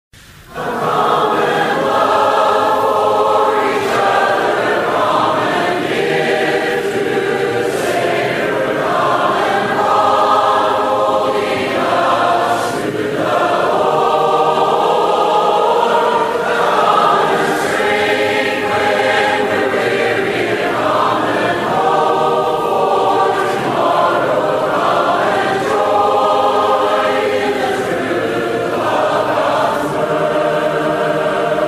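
A choir singing in phrases a few seconds long, starting about half a second in.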